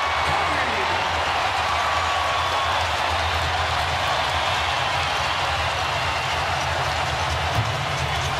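Basketball arena crowd cheering and applauding, a steady wash of many voices with a low rumble underneath.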